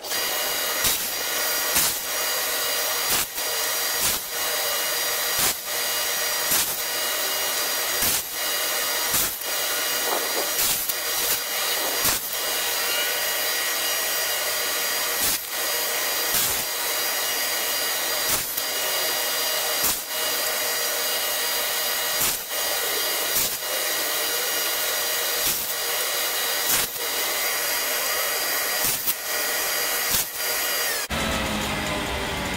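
Table saw fitted with a dado stack running steadily and cutting dados into wooden hive pieces. Sharp clicks recur about once a second over the running.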